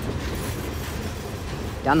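Freight train's last covered hopper cars rolling past on the rails, a steady rumble of wheels on track that slowly fades as the tail end of the train moves away.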